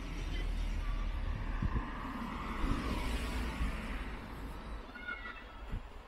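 Street traffic: a car passing by on the road, its tyre and engine noise swelling to a peak midway and then fading, over a steady low rumble. A few brief high chirps near the end.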